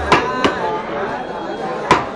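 Hammers striking stacks of paper on wooden stump blocks, three sharp knocks: one just after the start, one about half a second in, and the loudest near the end.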